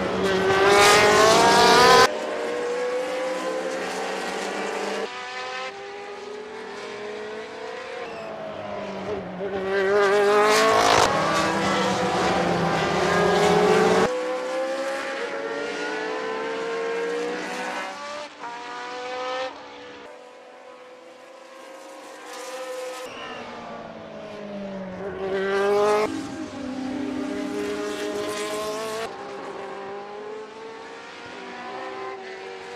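Engines of former Formula 1 racing cars running at high revs, several cars passing with the pitch rising and falling. The sound changes abruptly several times and is loudest near the start and again about ten seconds in.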